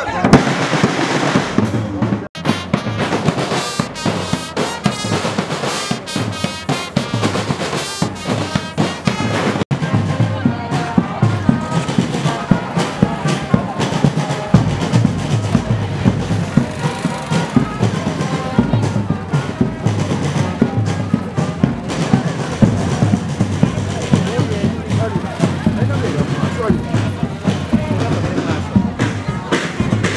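Music with fast, dense drumming, and voices in the mix.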